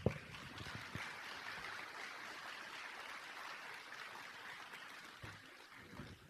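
Audience applauding, a steady patter of many hands that slowly dies away near the end, with one sharp thump at the very start.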